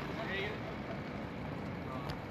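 Steady, low outdoor street background noise with a faint, brief distant voice a little under half a second in.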